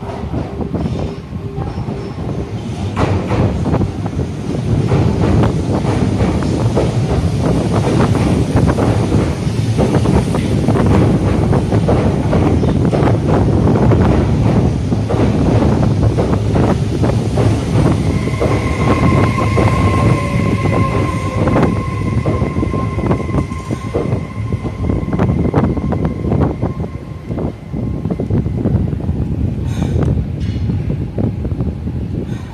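Kobe City Subway 6000-series train running into the station, its wheels clicking and knocking over the rail joints. About two-thirds of the way through, a steady high whine joins in and runs until shortly before the end.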